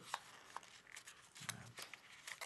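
Faint crinkles and crackles of folded paper being twisted and pressed between the fingers, with a sharper crackle near the middle.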